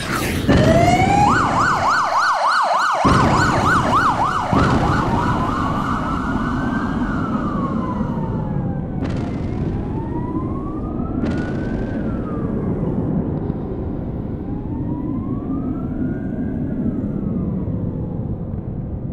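Electronic emergency-vehicle siren: a fast yelp for a few seconds, then a slow rising and falling wail, over a steady low rumble. Two short, sharp bangs cut through midway.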